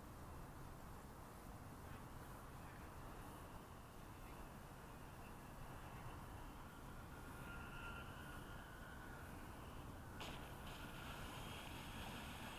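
Faint, distant whine of a Durafly Tundra RC floatplane's electric motor and propeller, slowly wavering in pitch and growing a little louder in the second half as the plane comes in over the water. A sharp click about ten seconds in.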